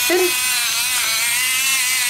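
Electric pepper mill running as it grinds peppercorns, its small motor giving a steady whine that wavers slightly in pitch.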